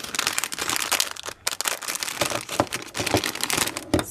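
Clear plastic packaging bag crinkling as hands rummage in it and pull items out, a dense run of crackles with a few sharper ones in the second half.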